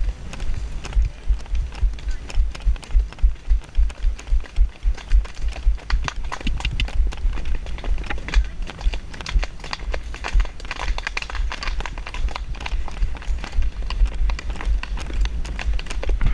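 A grey pony moving at a fast gait, likely a canter, on a dirt woodland track, heard from a helmet-mounted camera: a quick, even rhythm of hoofbeats and jolts over a low rumble on the microphone.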